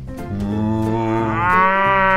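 A cow mooing: one long moo that starts a moment in and rises slightly in pitch toward the end.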